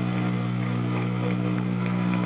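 Guitar amplifiers left humming between songs at a live metal show: a steady, low, droning hum through the PA, with faint scattered room noise.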